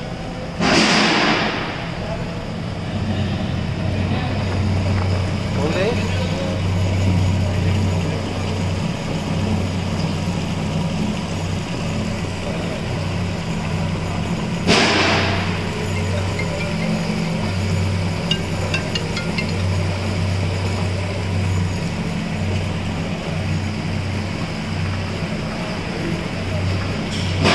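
Cow dung dewatering screw press running: its electric drive motor hums steadily while the screw turns and squeezes out dung. Two short, loud rushing noises come through, about a second in and again near the middle.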